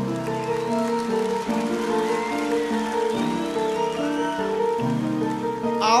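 Piano playing a slow, flowing intro of single notes over held lower notes; a singing voice comes in right at the end.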